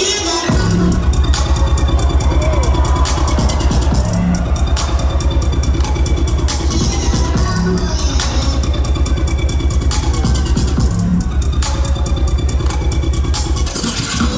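Jungle-style electronic dance track played loud over a festival sound system: the drop lands about half a second in, with a heavy sub-bass pulsing rapidly under fast drum hits.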